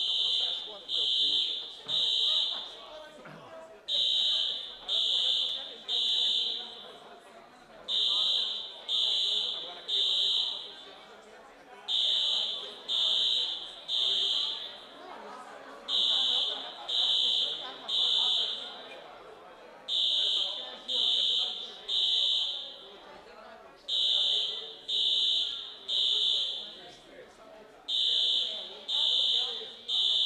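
Fire alarm sounding: a high electronic beep in groups of three, about a second apart, with a new group every four seconds, the temporal-three evacuation pattern. A murmur of voices runs underneath.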